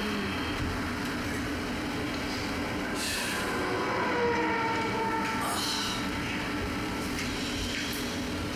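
Steady vehicle rumble like a passing bus or train, with a faint whine that slides down in pitch and swells a little around the middle.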